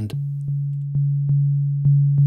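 Korg Volca Drum playing a low, pure synth tone, tapped again about every half second so the note restarts with a long release between. Each restart begins with a faint click, the sudden, clicky onset of a very short amp-envelope attack.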